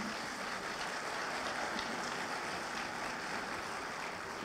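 A large seated audience applauding steadily.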